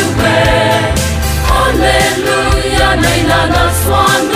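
A church choir song: several voices singing in harmony over instrumental backing with a bass line and a steady beat.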